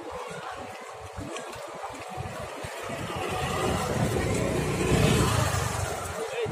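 A motor vehicle passing close by: its engine noise builds from about halfway through, peaks near the end and then begins to fade.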